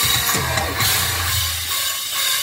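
Metalcore band playing live and loud, with drums, heavy sustained bass and a wash of cymbals.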